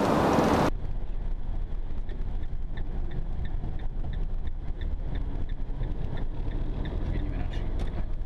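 Passenger van driving, heard from inside the cab: a steady low engine and road rumble with faint light ticking about three times a second. A louder rush of cabin noise breaks off suddenly less than a second in.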